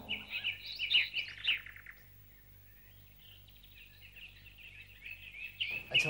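Birds chirping: a burst of quick, high chirps in the first two seconds, then fainter scattered chirps, rising again near the end.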